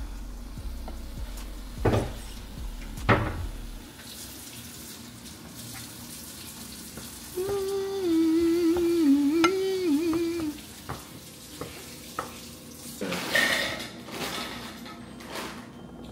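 A wooden spatula stirring and scraping browned ground meat in a large skillet, with a few sharp knocks against the pan near the start and a steady kitchen hiss underneath. Around the middle a wavering pitched tone, like a voice humming, is heard for about three seconds.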